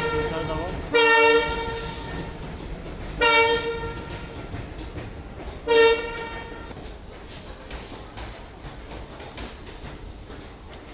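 Passenger train moving through the station, its horn sounding three short blasts in the first six seconds. After the blasts the coaches roll on with a steady rumble and faint wheel clatter.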